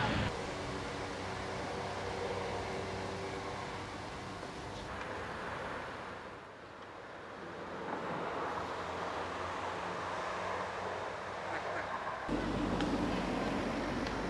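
Outdoor background of distant traffic with faint, indistinct voices: a steady low hum that drops away briefly about six to seven seconds in and changes abruptly about five and twelve seconds in.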